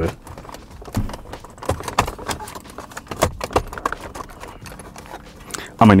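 Plastic center-console trim of a Mercedes W204 being wiggled loose by hand, giving irregular clicks, knocks and light rattles.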